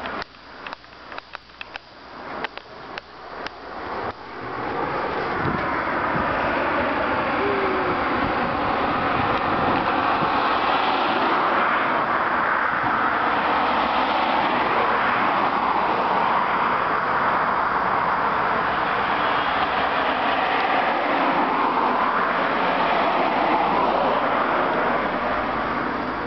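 Running footsteps on a gritty concrete slope, quick steps for the first few seconds. Then steady, loud traffic noise from cars on a multi-lane road, tyre noise swelling and fading as vehicles pass.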